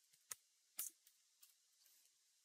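Two faint computer-keyboard key clicks about half a second apart, otherwise near silence.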